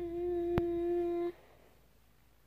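A woman humming one steady note with closed lips for about a second and a half, with a single sharp click partway through.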